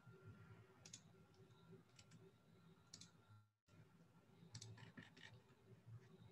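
Near silence with a few faint, sharp clicks from operating a computer, roughly one a second and then a quick cluster near the end. Just past halfway the sound drops out completely for a moment.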